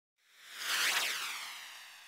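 A whoosh sound effect for a title card: a hissing swell with a sweeping pitch that peaks about a second in, then fades away.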